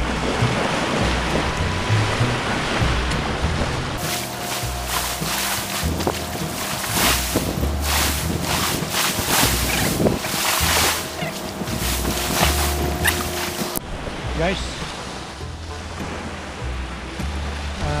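Small waves washing onto a sandy beach, with wind buffeting the microphone.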